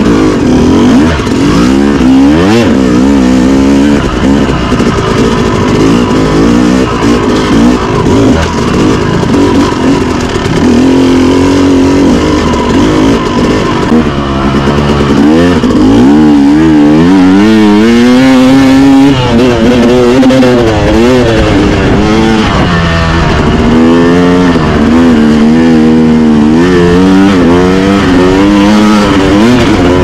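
Yamaha YZ250X two-stroke single-cylinder dirt bike engine under load on trail, the revs rising and falling continually every second or so as the throttle is worked.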